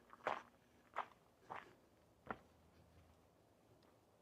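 Four faint footsteps on gravel, about two-thirds of a second apart.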